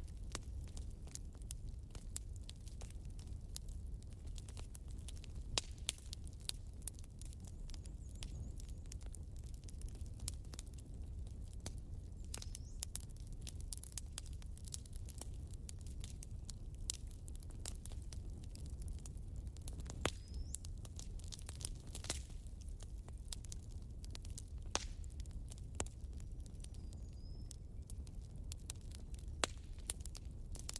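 Campfire crackling: irregular sharp pops and snaps over a steady low rumble of burning wood.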